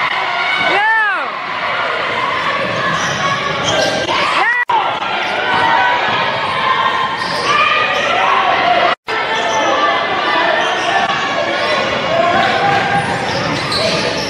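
Game sound from a basketball game in a gym: a ball dribbled on the hardwood court, with crowd voices echoing around the hall. The sound drops out briefly twice, at cuts between plays.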